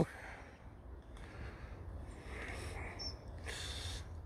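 Quiet outdoor background with a low rumble on the microphone and a few soft, short breaths close to it, about a second apart.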